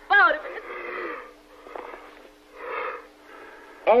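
A man's laboured, wheezing breaths after a brief moaning cry, as of someone struggling for air.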